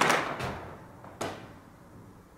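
A sudden thud right at the start that fades over about half a second, then a shorter, fainter knock just over a second in.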